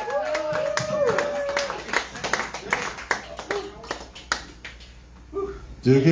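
A small bar audience clapping while one voice holds a long shouted call. The claps thin out to a few scattered ones and then die away.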